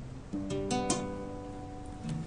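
Acoustic guitar playing a G seventh chord: it starts about a third of a second in, takes a few quick picked strokes up to about a second in, then rings on and fades.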